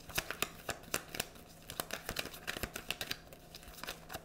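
A tarot deck being shuffled by hand: a quick, uneven run of card clicks and flicks as the cards slide and snap against each other.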